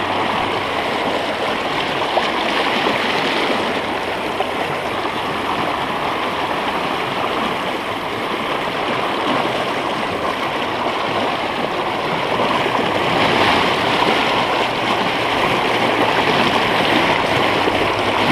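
A fast, shallow mountain river rushing over stones in a riffle, heard close to the water as a steady, loud rush, growing a little louder in the last few seconds.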